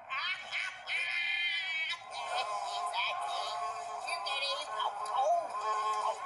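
Cartoon soundtrack playing from a TV: a high-pitched, wordless cartoon character's voice over background music, thin and tinny, with almost no bass.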